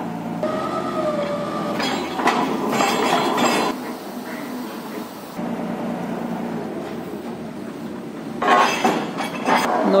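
Truck-mounted borewell drilling rig's engine running steadily, with metal clinks and clanks as steel drill rods are handled; the noise swells about two seconds in and again near the end.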